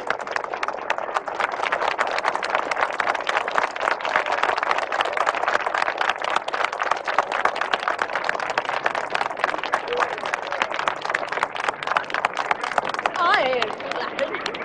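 A crowd applauding: many hands clapping in a dense, steady patter.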